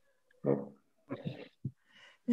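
A few short bursts of a person's laughter, with pauses between them.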